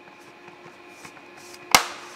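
Faint handling ticks, then one sharp plastic click near the end: the HP EliteBook 840 G7's bottom cover being pressed and its clips snapping into place.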